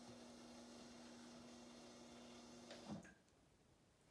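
Refrigerator door water dispenser running into a metal can: a faint, steady hum with the trickle of water. It cuts off with a click about three seconds in, as the dispenser is released.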